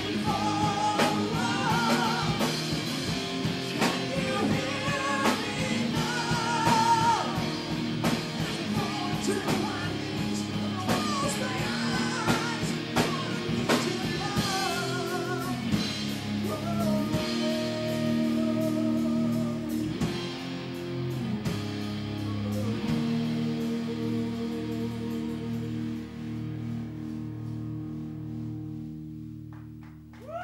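A metal band playing live: singing over distorted electric guitars, bass and a drum kit. About two-thirds of the way through, the drums stop and the final chords ring out and fade as the song ends.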